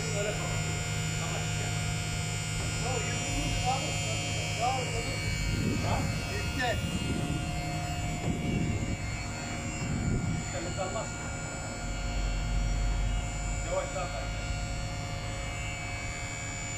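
Powered overhead crane of an animal-ambulance body extending its beam out of the roof opening, its drive giving a steady electric hum.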